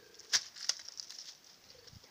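A few short rustles and sharp clicks close to the microphone, the loudest about a third of a second in and another just after, then fainter rustling that dies away.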